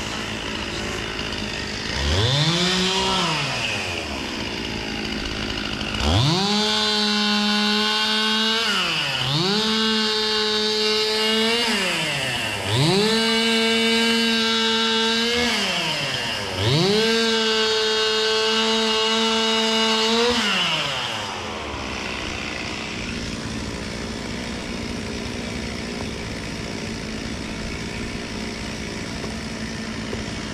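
Two-stroke chainsaw revved in bursts: a short blip about two seconds in, then four full-throttle runs of two to four seconds each, the pitch rising fast, holding high, then falling away. After the last run only a fainter steady hum is left.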